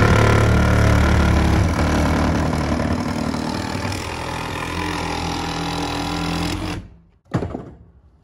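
Handheld power saw cutting a rectangular vent hole through wooden siding, running steadily and then stopping abruptly near the end as the cut is finished. A short knock follows.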